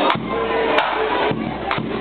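Breton bagad bagpipes (biniou braz) and drums playing together, heard close and loud so the pipes blur into a dense sound, with drum strikes just under a second apart.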